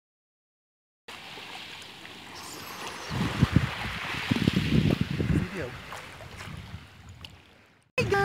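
Silence for about a second, then seawater sloshing and splashing close to the microphone around a swimmer, heaviest in the middle and fading out near the end.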